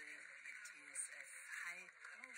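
Faint, indistinct speech over a steady hiss, sounding like a broadcast voice played back through a small speaker.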